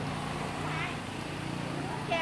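Busy market ambience with a small engine running steadily close by, under scattered voices of shoppers and vendors.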